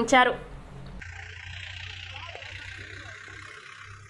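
A voice-over ends in the first moments, and about a second in the sound cuts to faint outdoor field ambience: a steady hiss over a low hum, with scattered faint sounds.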